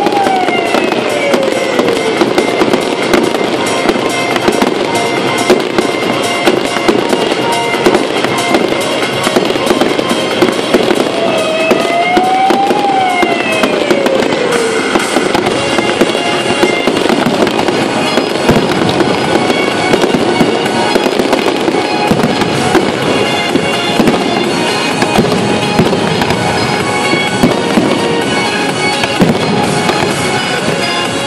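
Aerial fireworks display: a dense, continuous barrage of shell bursts and crackling stars, with music playing underneath.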